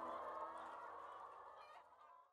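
A chicken clucking, faint and fading away as the closing jingle dies out.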